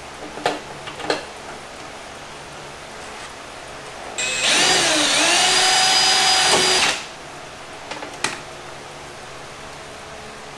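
Power drill boring a hole through a fiberglass fender flare, running for about three seconds in the middle. Its pitch dips briefly and then holds steady. A few light clicks come before and after.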